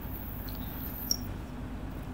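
Quiet background hiss with a faint low hum, and one brief faint click about a second in.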